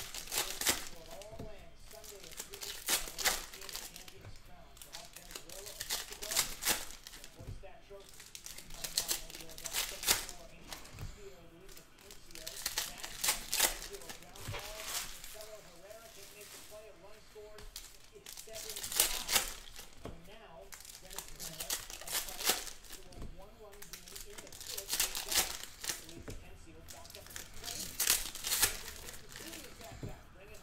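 Foil trading-card pack wrappers crinkling and tearing open in repeated short bursts every couple of seconds, with cards shuffled in between.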